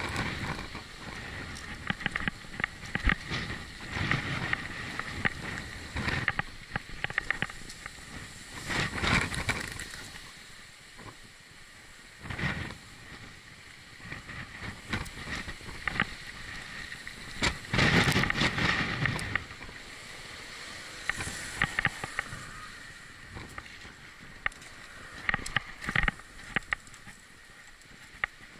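Wind buffeting an action camera's microphone as a bicycle is ridden, with scattered knocks and rattles from the bike over rough pavement. The wind swells in louder rushes, the strongest about two-thirds of the way in.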